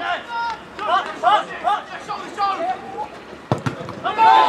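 Footballers shouting short, unintelligible calls to one another across an outdoor pitch. There are two sharp thuds about three and a half seconds in.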